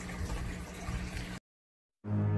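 Aquarium running: bubbling water with a steady low pump hum. It cuts off abruptly into dead silence about two-thirds of the way through.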